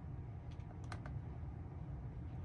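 A few sharp clicks from a Tesla steering wheel's right scroll wheel being rolled and pressed, in two quick pairs about half a second and a second in, over a low steady hum.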